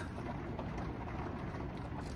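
Steady background hiss and low rumble (room tone), with no distinct sounds standing out.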